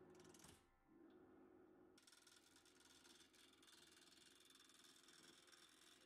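Very faint wood lathe running with a hand gouge cutting the spinning wooden blank: a steady hum, and from about two seconds in a dense, rapid fine scraping of the tool on the wood.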